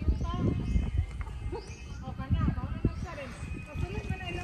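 Indistinct voices talking and calling, over an uneven low rumble.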